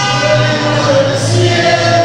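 Mariachi band playing, with voices singing held notes over the instruments.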